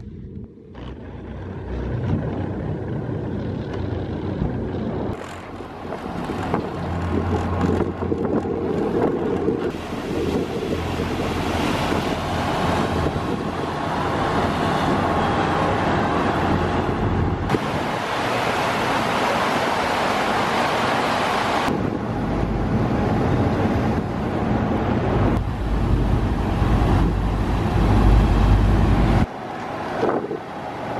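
Wind buffeting the camera microphone on the deck of a moving ferry, over the rush of the ferry's churning wake. The sound changes abruptly a few times where the shots are cut together.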